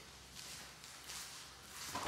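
Faint footsteps and clothing rustle of a person walking up, a few soft scuffs.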